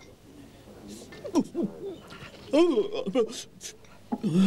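A person's voice making short wordless vocal sounds with sweeping, rising and falling pitch, in two bursts about a second in and again after two and a half seconds.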